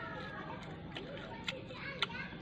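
A person chewing a mouthful of food, with a few short sharp mouth clicks and smacks, over faint voices in the background.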